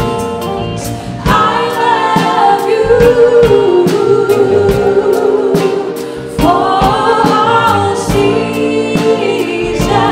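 A live soul band, with keyboard, electric guitar, bass, congas and drum kit, plays under singing over a steady drum beat. Two long sung phrases with held notes come in, one about a second in and another about six seconds in.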